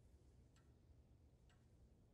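Near silence: room tone with two faint ticks about a second apart.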